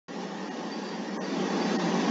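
Steady hiss of background noise, slowly growing louder, with a faint click a little past the middle.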